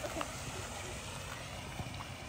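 Steady outdoor background noise, a low rumble under an even hiss, with a couple of faint ticks or rustles as someone steps down through grass to the water's edge.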